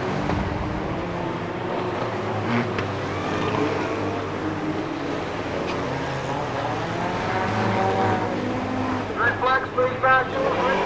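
Several stock car engines running as the cars lap the oval, their pitches rising and falling as they accelerate and pass. A voice comes in near the end.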